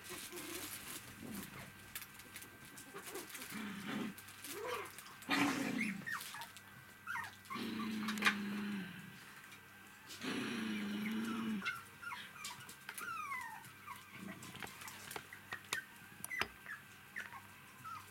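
Three-week-old poodle puppies whining and squeaking as they play, with two longer drawn-out whines in the middle and short high squeaks later on. Light clicks and ticks scatter throughout.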